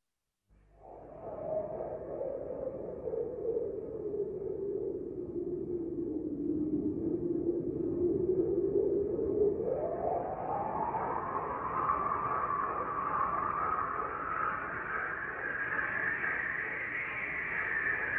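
A swelling, whooshing sound effect: a hiss with a hollow resonant tone in it, starting about half a second in, that sinks in pitch for the first several seconds and then climbs steadily higher for the rest.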